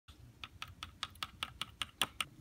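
A quick, even run of light clicks or taps, about five a second.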